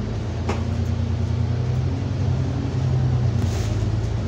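Alexander Dennis Enviro400 (E40D Euro 6) diesel bus heard from inside the passenger saloon while under way: a steady low engine and driveline drone that grows slightly louder. A short click sounds about half a second in.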